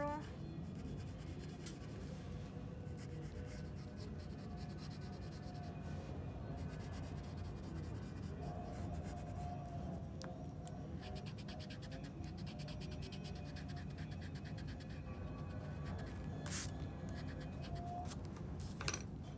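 Graphite pencil scratching on sketchbook paper in short strokes, most of them in the first half, over a steady low room hum.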